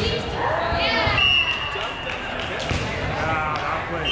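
Volleyball being played at the net in a rally: several dull knocks of hands striking the ball, with players' raised voices calling out around them.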